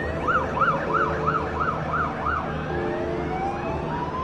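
Emergency vehicle siren in a fast yelp, about three rising-and-falling sweeps a second. About two and a half seconds in it changes to a slow rising wail.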